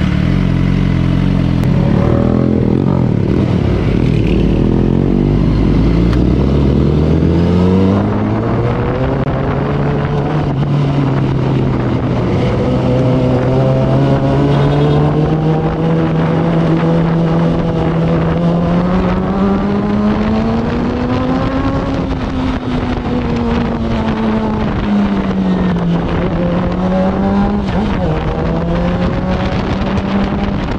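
Suzuki sportbike's engine pulling away from low revs and accelerating over the first several seconds, then cruising with its note rising and falling with the throttle. It is heard from the rider's position with wind and road noise.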